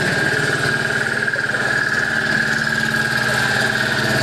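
A small engine running steadily, with an even pulsing hum and a constant high-pitched whine over it.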